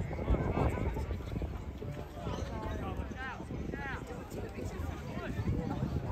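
Distant voices of players and spectators calling and shouting across a rugby field, with a few rising-and-falling shouted calls in the middle, over a low irregular rumble.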